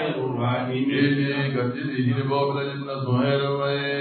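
Male voices chanting a repeated religious phrase in long held notes, one steady, unbroken chant.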